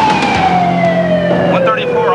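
Police car siren wailing, its pitch gliding slowly downward.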